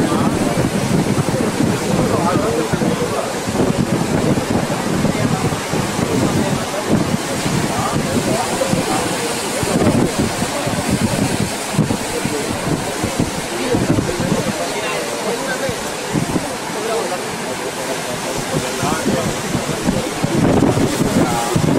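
Ocean surf breaking on a rocky shore, a steady wash of water, with wind blowing on the microphone and voices of people in the background.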